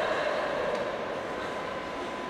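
Steady background noise of a large hall, with a constant faint high-pitched tone, a little louder in the first second.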